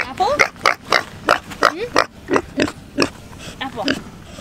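Young pigs grunting in quick succession, about three short grunts a second, with a few rising, higher-pitched notes among them.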